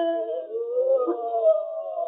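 A wordless, wailing human voice on an early acoustic recording, thin and cut off in the high range, its pitch sliding up and then slowly falling away near the end.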